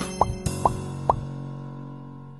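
Outro music fading out, with three quick rising pop sound effects about half a second apart, one for each 'Subscribe', 'Like' and 'Share' box popping up on the end card.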